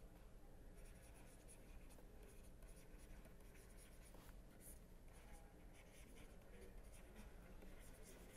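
Faint scratching of a stylus writing on a pen tablet, a run of short strokes over a low steady hum.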